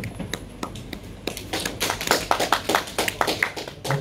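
A group of people clapping: a few scattered claps at first, then a full round of applause from about a second in.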